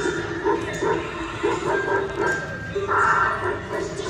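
Life-size Halloween animatronic cymbal monkey set off by its step pad, playing its sound effects: a quick string of short yelping, animal-like cries, several a second, loudest about three seconds in.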